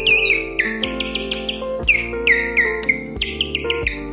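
Salafanka, a strip of thin plastic bag stretched taut and blown between the lips as a reed, giving high, bird-like chirps. The chirps come in short, quick runs, each note bending down in pitch, over background keyboard music.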